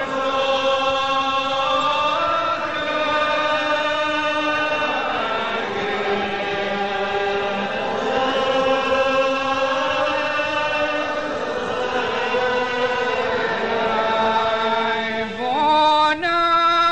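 Unaccompanied Gaelic psalm singing by a congregation, in long, slowly drawn-out notes that glide from one to the next. A new line begins on a rising note near the end.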